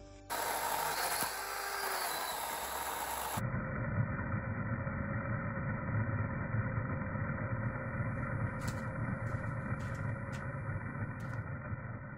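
A noisy rustle of pine branches being dragged. About three seconds in, a cordless battery chainsaw starts a steady electric motor whine as it cuts through fallen branches, with a few short clicks near the end.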